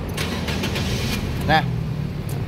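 Nissan Grand Livina 1.5's four-cylinder petrol engine started with the key: a short crank that catches within about a second and settles into a steady idle.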